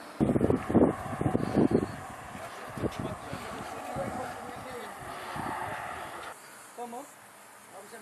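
Wind buffeting an outdoor microphone in loud gusts for the first two seconds, over a steady hiss that cuts off suddenly about six seconds in; faint voices follow near the end.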